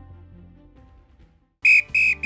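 Soft background music fading out, a moment of silence, then a loud, high-pitched beep about a second and a half in, with a second beep starting at the very end: the opening of a sound-effect sequence.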